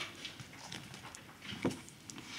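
Pages of a book being turned and papers handled close to a microphone: soft rustles and scattered light taps, with one louder knock near the end.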